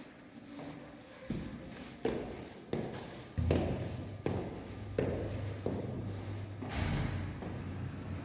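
Footsteps climbing terrazzo stairs, about eight steps in all at roughly one every two-thirds of a second, each echoing in the stairwell. A steady low hum comes in about three and a half seconds in.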